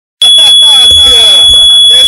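A steady high-pitched tone starts abruptly a fraction of a second in and holds, under people's voices talking. Very loud.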